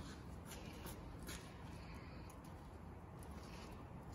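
Faint room hum with a few soft clicks and rustles of small objects being handled by hand.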